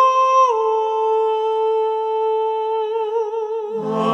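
A single voice singing a long held high note a cappella, stepping down a little about half a second in and wavering near the end. Lower choir voices come in just before the end.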